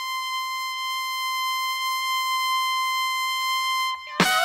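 One high musical note held at a steady pitch for about four seconds, siren-like and without vibrato, opening the song. It cuts off just before the drums and band come in.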